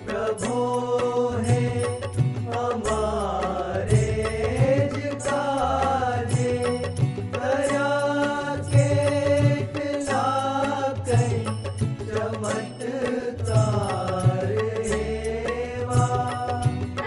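Indian devotional song: a singer holding long notes and sliding between them over a steady drum beat.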